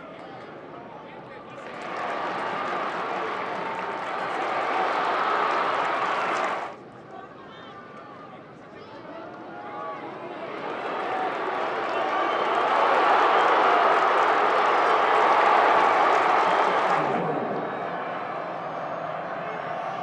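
Stadium crowd cheering in two swells. The first cuts off suddenly about a third of the way in. The second builds gradually and cuts off suddenly near the end. Between the swells, quieter crowd noise.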